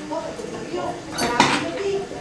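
A short clinking clatter of something hard knocking against the table, about a second and a half in, over indistinct talk in the room.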